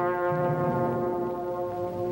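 Soundtrack music: a sustained brass chord held steadily, with lower notes shifting beneath it.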